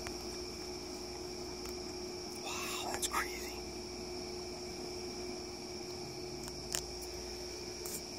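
A brief whispered murmur about three seconds in, over a steady background hum, with a couple of faint clicks.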